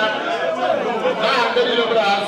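A man speaking loudly into a handheld microphone, with chatter from the crowd around him.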